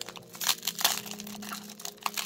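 Foil booster-pack wrapper crinkling and crackling in quick irregular bursts as fingers handle it.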